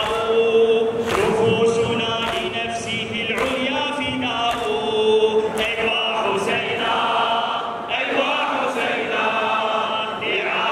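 A large crowd of men chanting a Shia mourning lament (latmiya) in Arabic in unison, with the refrain "ay wa Husaynah" ("Oh Hussain"). The chant is kept in time by sharp strikes about once a second, typical of chest-beating (latm).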